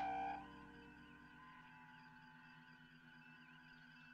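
A short electronic beep from the bridge communications console, then steady electronic humming tones of the starship bridge background that fade slightly.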